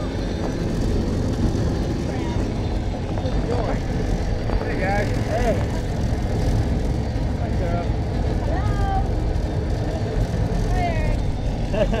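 Wind buffeting the microphone on a moving open cable car: a steady low rumble, with short bursts of voices and laughter over it.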